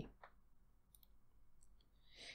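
Near silence with a few faint, short clicks from a computer mouse button.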